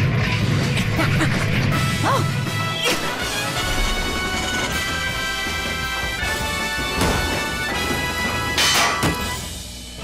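Cartoon sound effects of a robot contraption crashing and clattering apart over action music, with a loud crash near the end before the sound dies down.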